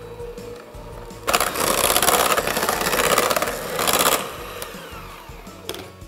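Electric hand mixer running for about three seconds, starting suddenly about a second in, its beaters working melted chocolate, cream cheese and cocoa powder into a thick mixture. Background music plays underneath.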